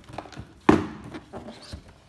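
Cardboard shoe box being handled and turned over on a wooden floor: a sharp thump about two-thirds of a second in, with several lighter knocks and scrapes of cardboard around it.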